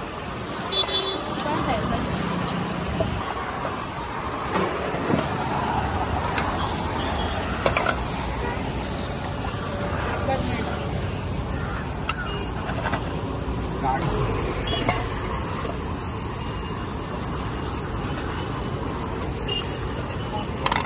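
Pav buns toasting in butter in a frying pan, with a metal knife clicking and scraping against the pan, over road traffic and background voices.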